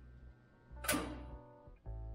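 Acoustic guitar music: a chord struck sharply about a second in rings on, and another chord starts near the end.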